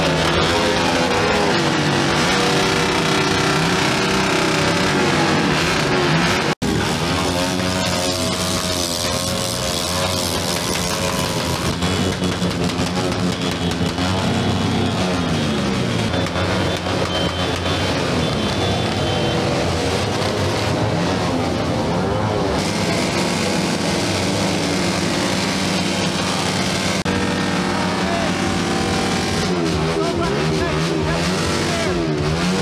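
Motorcycle engines revving again and again, their pitch climbing and falling, with music playing at the same time. The sound cuts out very briefly about six seconds in.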